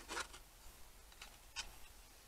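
Faint handling sounds of a small phone holder being turned over and tried for fit. There is a short rustle at the start, then two light clicks a little after a second in.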